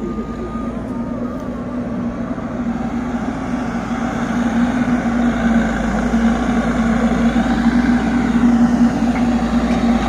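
Heavy diesel engines from the truck and the backhoe loaders clearing the spill, running with a steady low hum that grows gradually louder.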